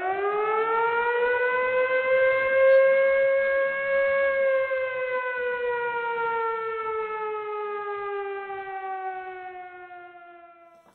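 Air-raid siren giving one long wail: the pitch winds up over the first second or two, holds, then slowly falls and fades out near the end.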